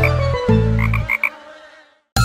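Cartoon frog croaks, a quick run of about four, about a second in, over the last chord of a children's song, which then fades out.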